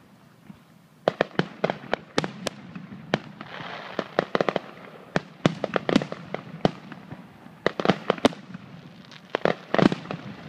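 Aerial fireworks shells bursting in a rapid, irregular series of sharp bangs. The bangs begin about a second in and come in dense clusters midway and again near the end.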